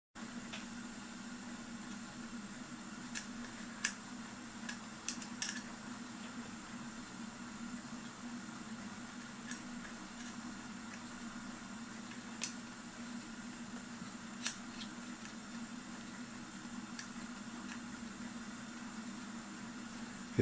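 A few light metallic clicks and taps as small clock parts are fitted onto the geared shaft of the clock's metal motor plate, over a steady low hum.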